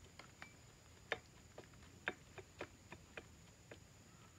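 A string of faint, irregular metal clicks as the carrier and ring gear of a 1973 GMC motorhome final drive are rocked by hand against their play. The clicking is the slop in the unit, which the owner hopes new bearings will cure.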